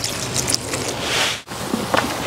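Water poured from a jug onto a bowl of dried chillies and whole spices, a steady splashing trickle that cuts off abruptly about one and a half seconds in.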